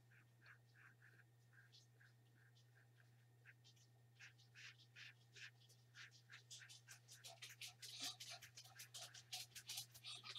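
Faint strokes of a small paintbrush on paper, quickening and growing louder in the second half, over a steady low electrical hum. In the first half a faint, regular peeping repeats about three times a second.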